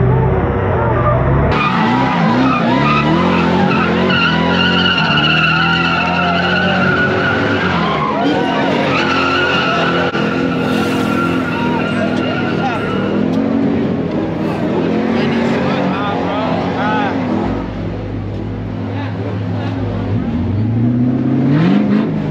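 Car tyres squealing in a long burnout, with the engine running underneath and a crowd shouting. Near the end an engine revs up.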